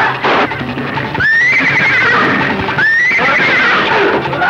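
A horse neighing twice, about a second and a half apart, each call jumping up in pitch and then wavering, over film background music.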